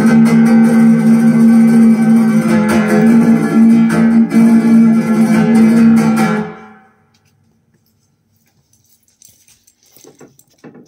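Flamenco guitar music played from a vinyl record through horn loudspeakers in a room; the music stops about six and a half seconds in. After that there is near silence with a few faint knocks near the end.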